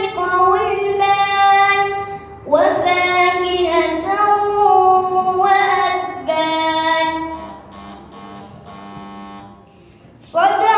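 A single voice reciting the Quran in melodic tilawah style, with long held, ornamented phrases that glide between notes, briefly breaking for breath. Near the end the phrase sinks lower and softer.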